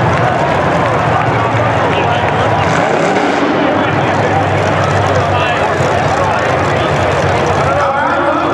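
Demolition derby cars' engines running steadily in an arena, under a continuous wash of indistinct voices.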